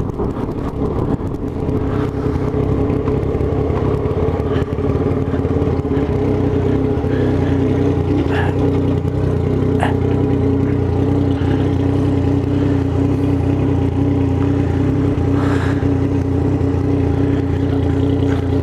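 Yamaha MT-09's three-cylinder engine running at low revs, then settling into a steady idle about six seconds in.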